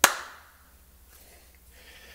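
A single sharp hand clap right at the start, ringing briefly in the room before dying away. It is a sync clap, marking the point for lining up the separately recorded audio with the camera footage.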